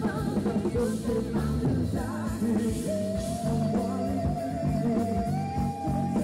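A live rock band playing: electric guitars, bass and drums with a singer, with a long held note starting about halfway through, heard from the crowd in front of the stage.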